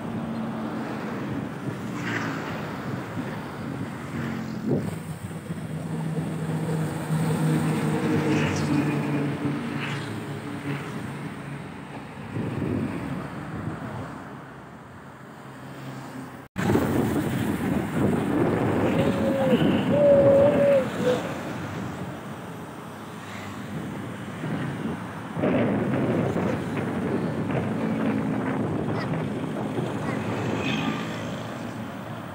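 Diesel buses and trucks passing close by, engine sound swelling and fading with each pass, with wind on the microphone. It cuts off suddenly about halfway through and resumes with more passing traffic, including a brief wavering tone a few seconds after the cut.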